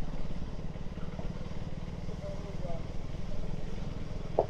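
Single-cylinder motorcycle engine running steadily at low speed, with a fast, even pulse.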